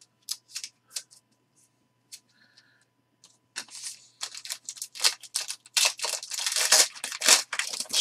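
A few light clicks of trading cards being handled, then from about three and a half seconds in a 2020 Panini XR football foil card pack crinkling loudly as it is picked up and torn open.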